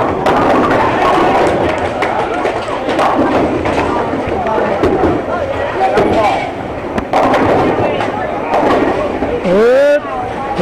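Bowling alley din: many people chattering, with sharp knocks of bowling balls and pins, and a louder clatter of pins being hit near the end.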